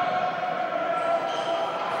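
Basketball game sound on an indoor court: a ball bouncing, under a steady hum of several held tones.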